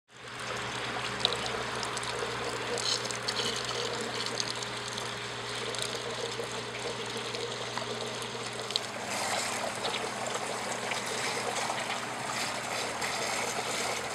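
Water trickling and splashing steadily off the wheels of a copper-pipe water-wheel fountain sculpture, with a few light clicks.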